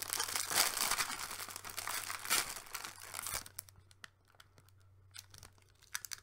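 Plastic biscuit packet being torn open and crinkled by hand: dense crackling for about three seconds, then it drops off to a few faint crinkles and clicks.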